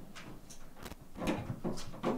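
A handful of faint, scattered clicks and knocks from working the battery compartment of an acoustic-electric guitar whose pickup has gone dead, as the battery is being changed. A short muttered syllable comes about a second in.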